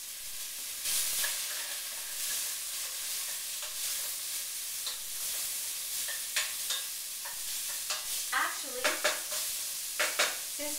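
Chopped onions and green peppers sizzling in a stainless steel pan in a little water instead of oil (simmer-frying), with the hiss swelling about a second in. A utensil stirring the vegetables scrapes and taps against the pan several times in the second half.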